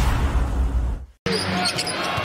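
A broadcast transition sound effect, a low rumbling whoosh, cuts off sharply about a second in. After a brief gap, live arena game sound begins, with a basketball being dribbled.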